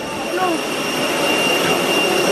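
Steady jet airliner engine noise, an even rush with a constant high-pitched whine over it.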